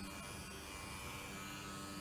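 A corded electric wand massager buzzing low and steadily against the frame of a baby's bouncer seat, setting it vibrating.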